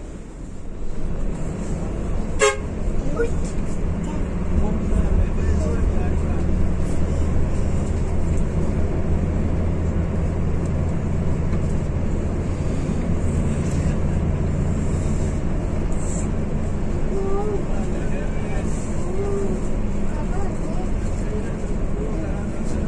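Intercity coach's diesel engine heard from the driver's cab, getting louder about a second in as the bus pulls away and then running steadily under load. A sharp click comes once, early, and vehicle horns sound among the traffic.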